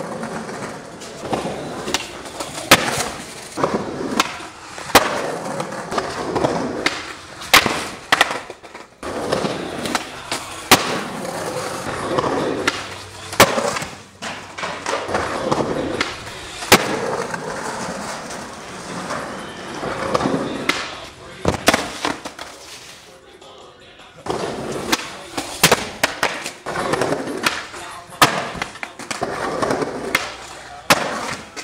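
Skateboards on concrete: wheels rolling, with repeated sharp clacks of tails popping and boards slapping down and hitting the ground at a concrete stair set. There is a quieter lull about two-thirds of the way in.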